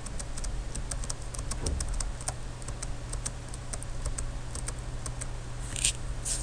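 Computer keyboard and mouse clicking: irregular single keystrokes and clicks, with a louder quick cluster near the end, over a steady low hum.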